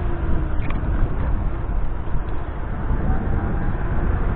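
Wind rushing over the microphone and low road rumble from a Mibo electric kick scooter riding along a street.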